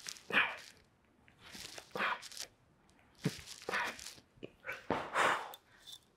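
A person's sharp, breathy exhales, four of them about a second and a half apart, one with each toe-touch crunch rep.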